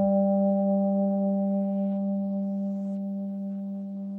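A single electric guitar note held and sustained, ringing steadily and slowly fading away, with faint soft swishes about two and three seconds in.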